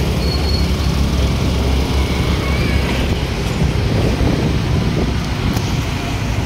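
Steady low engine rumble and road noise from a moving vehicle, with wind on the microphone. A short high beep repeats a few times and stops about half a second in.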